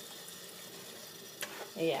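Kitchen tap water running onto a plastic Cricut cutting mat in a sink as the soap is rinsed off: a steady hiss, with a short click about one and a half seconds in.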